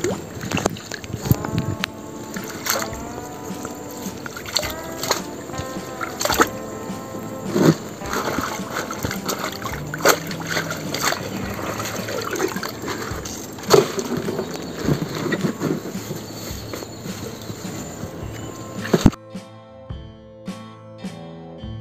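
Background music over irregular water splashing and sloshing as a wire-mesh crab trap is shaken and worked at the surface of a river; the splashing stops about a second before the end, leaving only the music.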